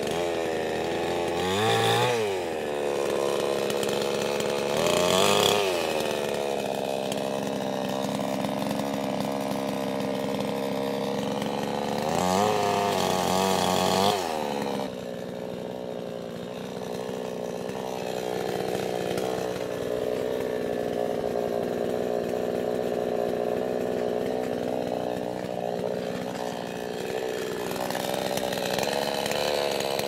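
Chinese-made gas chainsaw running throughout, revving up in repeated swells while it cuts through a tree limb. About halfway through it drops back and runs at a lower, steadier speed.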